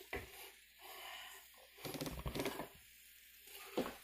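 Faint clicks and light clatter of a pan lid and skillet being handled, with a slightly busier patch about halfway through and a short sharper click near the end.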